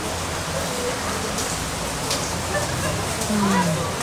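Steady rain falling, with faint voices of people nearby.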